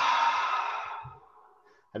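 A long, audible out-breath let out deliberately as a laughter-yoga breathing warm-up. It is strongest at the start and fades away about a second in.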